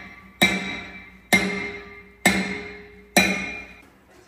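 Heavy hammer blows on a steel bar driven under a plate welded to a steel tank hull, striking four times about once a second, each blow ringing out metallically and fading. The bar is being hammered to break the welded plate off the hull.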